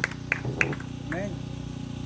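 Short fragments of a man's voice through a PA system, over a steady low electrical hum.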